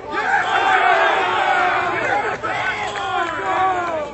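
Crowd of many voices shouting and cheering at once. It starts suddenly and is loudest in the first two seconds, then eases off near the end.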